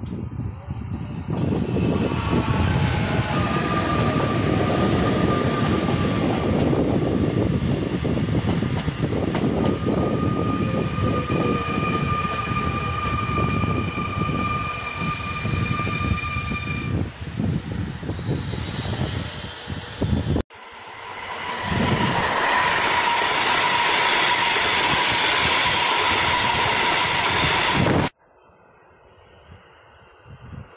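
Double-deck electric regional train passing along a station platform: loud, continuous running and wheel-on-rail noise with a long, steady high whine over it. About 20 seconds in the sound cuts abruptly to a second train approaching, with its steady noise building.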